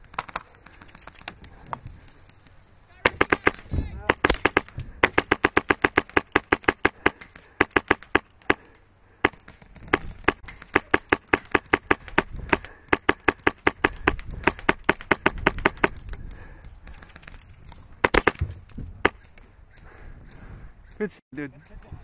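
Airsoft rifle firing in quick strings of sharp cracks, about six or seven shots a second, from about three seconds in until about sixteen seconds in, with a couple more shots a little later.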